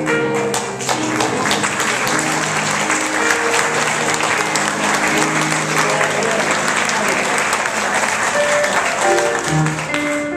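Audience applauding over background music. The clapping fades out about nine and a half seconds in, leaving the music playing.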